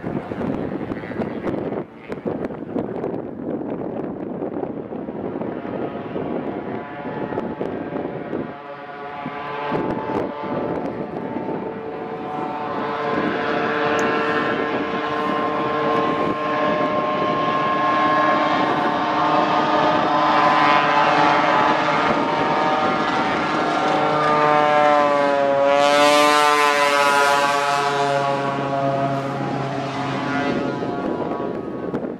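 Single-engine floatplane's piston engine and propeller running at low power on the water. The engine grows louder from about a third of the way in and its pitch wavers near the end. Wind buffets the microphone at first.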